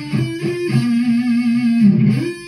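Electric guitar, tuned down a whole step to D, playing a slow single-note lead phrase high on the neck. A note slides up just after the start and is held, then a lower note rings for about a second, and another slide up comes near the end.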